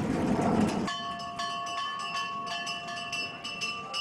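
Metallic ringing in several steady tones with a fast run of short strikes, typical of a bell rung over and over, starting about a second in after a stretch of dense low rumbling noise.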